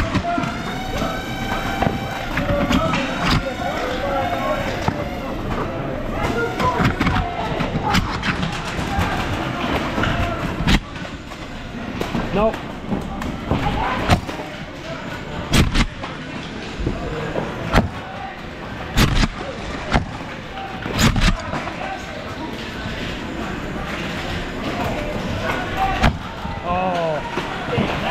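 Foam-dart blasters firing during a game: about eight sharp shots at irregular intervals, most of them in the middle stretch. Players' voices carry on underneath.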